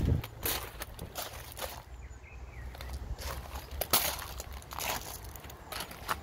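Footsteps crunching on a gravel drive, a few irregular steps with the loudest about four seconds in, over a low steady rumble.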